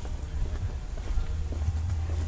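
Footsteps on an asphalt driveway while walking, with a low rumble on the phone's microphone.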